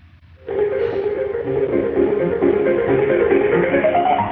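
Loud MIDI piano hold music playing down a phone line, starting about half a second in.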